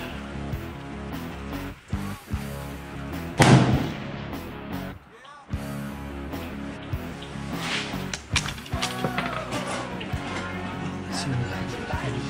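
A single shot from a Sako 85 Finnlight .30-06 rifle about three and a half seconds in, the loudest sound here, over steady background music.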